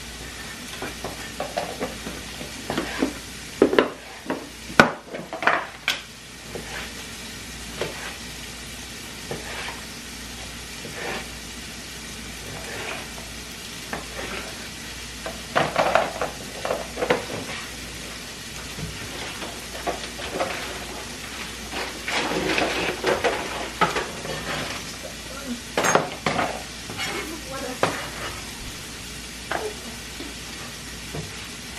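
Kitchen food preparation: a knife knocking on a cutting board as vegetables are cut, and plastic food containers and lids being handled and set down, in irregular clusters of knocks over a steady hiss.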